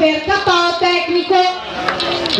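An announcer's voice over a public-address system, calling out in long, drawn-out syllables as the bout's winner is declared.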